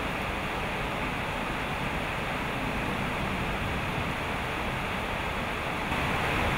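Steady rush of heavy rain and floodwater churned by motorbikes wading through a flooded street.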